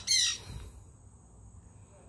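A parrot gives one short, high squawk right at the start.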